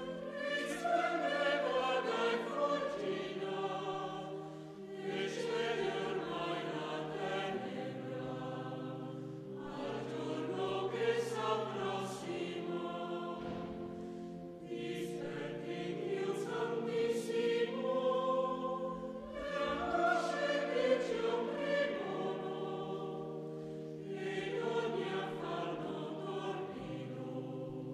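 Choir singing a sacred piece in phrases a few seconds long, with brief breaths between them, over held organ chords.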